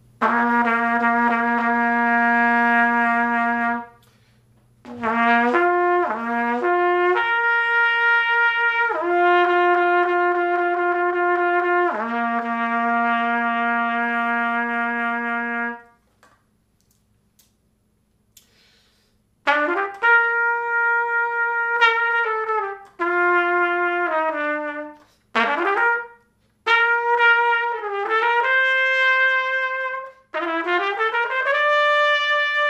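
French Besson Meha trumpet by Kanstul, a large-bore (.470) horn, played solo: long held warm-up notes first, then after a pause of about three seconds a phrase of shorter notes, several of them bent downward at their ends.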